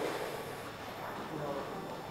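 A quiet pause: low gym room tone with faint voices in the background.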